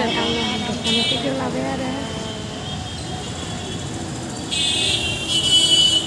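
Busy street din: people's voices, vehicle traffic and horns tooting, heard twice in short bursts, the second longer, near the end.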